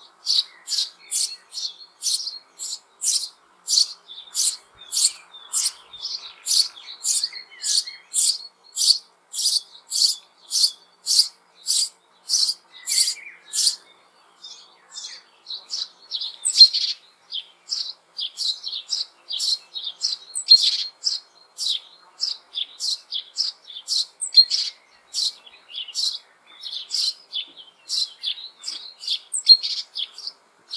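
Eurasian tree sparrow chicks begging for food from the nest hollow: a steady run of short high chirps, about two a second, turning less regular after a short break a little past halfway.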